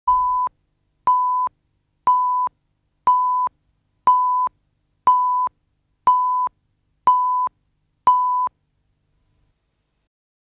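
Countdown leader beeps: nine identical short, steady beeps, one each second, each about half a second long. They stop about a second and a half before the end, leaving silence.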